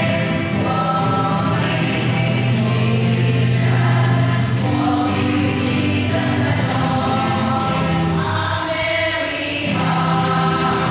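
A rondalla string ensemble of ukuleles and guitars playing a gospel chorus medley, with held notes over a low bass line.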